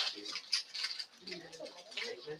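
Faint, indistinct speech in the background, with a few short soft noises.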